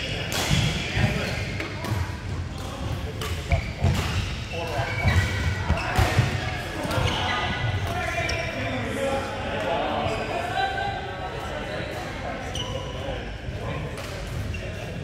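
Badminton rackets hitting a shuttlecock during a rally, sharp irregular hits about once a second, with players' footfalls on the court, echoing in a large hall.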